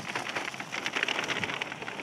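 Dry dog food kibble pouring from a bag into a cardboard box, a dense run of small rattling clicks as the pellets land.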